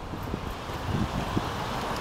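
Chevrolet Impala running in drive on jack stands, its engine and the free-spinning wheel hubs and brake discs making a steady noisy drone, with wind and low rumble on the microphone.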